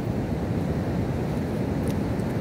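Steady low rush of ocean surf breaking on the beach, with wind buffeting the microphone.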